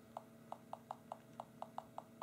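HTC Titan's Windows Phone on-screen keyboard giving a short, faint click for each letter typed, about four or five a second, unevenly spaced.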